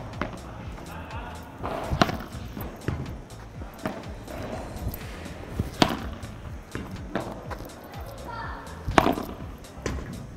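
Padel ball struck with a padel racket and bouncing on the court, a series of sharp pops with the loudest about two, six and nine seconds in.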